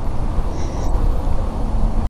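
Wind buffeting the microphone: a steady low rumble with no distinct events.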